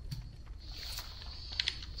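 Typing on a computer keyboard: a few key clicks, bunched about one and a half seconds in.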